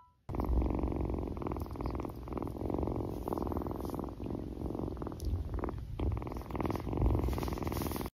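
Two-month-old Siamese kitten purring with the microphone pressed close to its fur: a steady, finely pulsed rumble starting about a quarter second in, with a couple of brief breaks a little past halfway.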